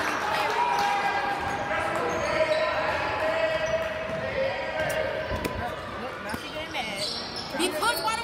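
A basketball dribbled and bouncing on a hardwood gym floor during play, with voices of players and onlookers echoing in the gym.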